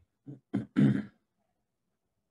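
A man clearing his throat: three short rough bursts in quick succession, the last and loudest about a second in.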